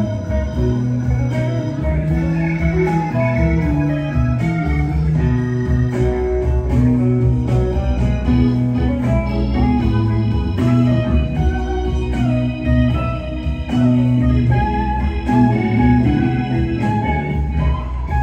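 Live rock band playing an instrumental passage, with electric guitar to the fore over bass, drums and keyboards.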